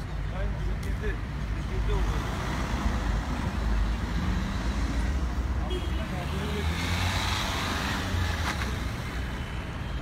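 Street traffic: a steady low rumble of cars and engines with road noise, and a louder rush of noise around seven seconds in.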